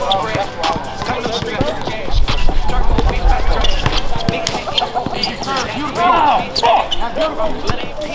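A basketball bouncing on an outdoor asphalt court as it is dribbled during play, with players' voices calling out around it. A low rumble rises about two seconds in and fades before the fourth second.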